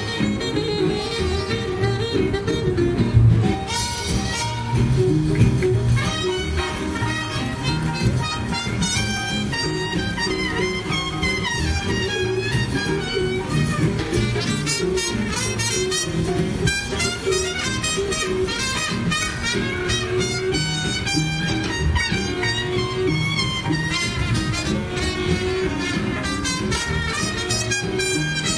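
Swing big band playing live: a saxophone section with brass, double bass and drums in an instrumental jazz passage, with two trumpets playing out front in the later part.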